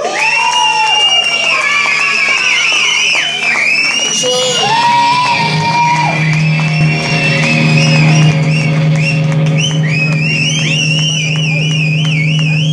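Live rock band on electric guitars and drums, loud, with wavering, bending high notes and a steady low note held from about halfway through. Shouts from the crowd come through over it.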